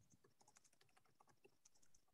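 Faint computer keyboard typing: scattered soft key clicks against near silence.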